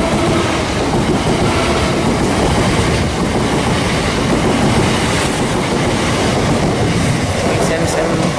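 Southern Class 377 Electrostar electric multiple unit running past close by: a loud, steady rush of train noise.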